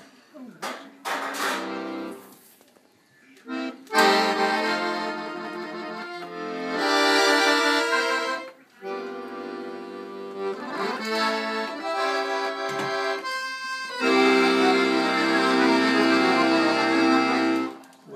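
Piano accordion playing held chords in short phrases. A few brief chords come at the start, then after a short pause longer phrases with small breaks between them, the last and loudest with low bass notes underneath. It stops just before the end.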